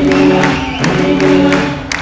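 Live band music with a steady drumbeat, about two beats a second, under long held sung notes, recorded from among the audience.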